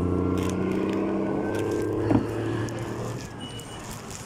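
A steady low mechanical hum, like a motor running, with one sharp knock about two seconds in, after which the hum fades away.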